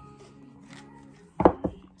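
A tarot deck being handled in the hands, with two short knocks of the cards about one and a half seconds in, over faint background music.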